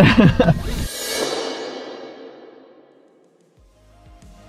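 A man laughs briefly, then the sound cuts to a music transition: a swishing effect fades away over about two and a half seconds, nearly to silence. New music starts just before the end.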